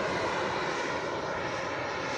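Skymaster Avanti XXL radio-controlled model jet's engine running at climb power, heard as a steady hiss as the jet climbs away.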